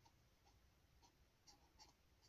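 Faint scratching of a pen drawing strokes on notebook paper: several short strokes, the strongest near the end.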